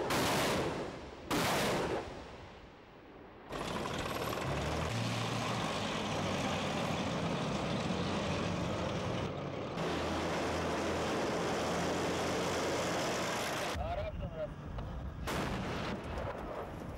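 Two loud gunfire reports about a second apart, each ringing out briefly. After them a vehicle engine runs steadily with a low hum for about ten seconds.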